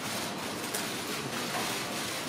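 Steady hiss of room noise in a crowded hall, with a few faint clicks.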